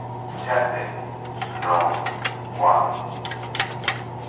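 A steady low hum of a noisy room, with three short voice-like sounds and a few light clicks.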